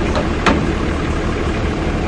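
Machinery engine running steadily at idle, with one sharp click about half a second in.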